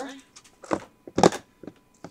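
A few short, sharp rustles and clicks from paper cupcake liners being put into a clear plastic storage box. The loudest comes a little over a second in.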